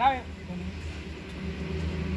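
A single short call with a falling pitch right at the start, over a steady low hum.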